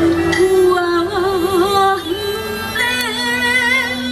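Live Taiwanese opera (gezaixi) music: a melody with wide vibrato over the accompaniment, with a low sustained note entering about halfway through.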